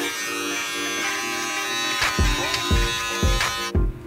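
King C. Gillette cordless beard trimmer buzzing steadily as it trims the beard line along the cheek, cutting off shortly before the end. Background music with a low beat plays underneath.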